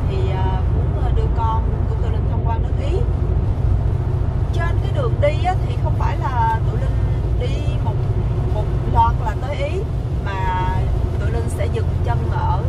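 A woman talking inside a Renault car's cabin over the steady low road and tyre rumble of motorway driving at about 100 km/h.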